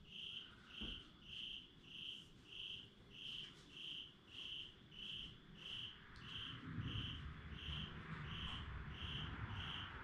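A cricket chirping in a steady rhythm, nearly two chirps a second, faint, with a low rumble from about six seconds in.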